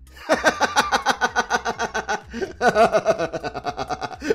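A man laughing hard: a rapid, unbroken run of ha-ha-ha. It comes in two long stretches, with a short catch of breath just after two seconds in.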